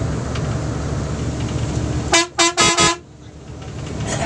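A vehicle horn sounds three quick blasts, the last one longest, about two seconds in, over steady road and engine noise heard from inside a moving bus.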